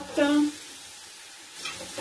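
Freshly grated carrots hitting hot oil with crushed garlic and ginger in a stainless pan and frying: a steady sizzling hiss that gets brighter and louder near the end.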